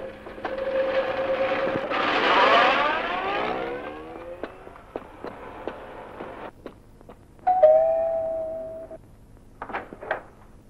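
A car pulling away, its engine rising in pitch as it drives off and fades over the first few seconds. A few light clicks follow, then a single held tone about a second and a half long.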